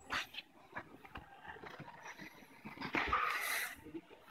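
Grapplers breathing hard and straining as they wrestle, with short knocks and rubs of bodies on the tatami mats. A long, hissing breath comes about three seconds in.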